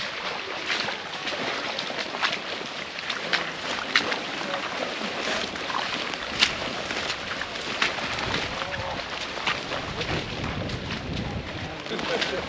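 Walking boots splashing and sloshing through shallow floodwater and mud, in irregular steps. Wind rumbles on the microphone for a few seconds later on.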